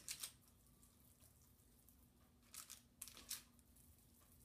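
Near silence, with a few faint, soft rubbing sounds of wet hands rolling raw ground-meat meatballs, a couple of them close together about two and a half to three seconds in.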